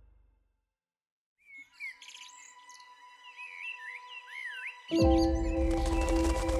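Birds chirping and singing in quick rising and falling whistled notes after a moment of silence. About five seconds in, loud music with a deep bass and held tones comes in over them.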